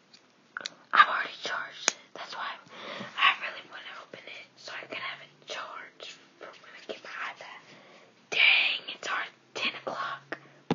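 A person whispering in short hushed phrases, with a louder breathy burst about eight seconds in.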